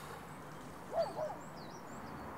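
A bird gives a short two-note call about a second in, over faint outdoor background, with faint high chirps from small birds.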